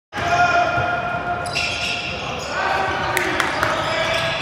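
Basketball game sounds echoing in a gym: a ball bouncing on the hardwood court with a few sharp knocks near the end, over spectators' voices.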